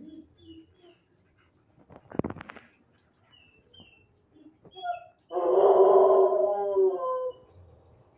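A dog in the shelter kennels gives a short harsh call about two seconds in. Then comes the loudest sound, a drawn-out whining howl of about two seconds that falls slightly in pitch at the end.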